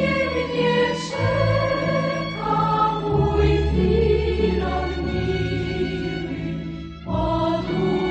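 Background music: a choir singing with instrumental accompaniment, in held notes, with a short lull about seven seconds in.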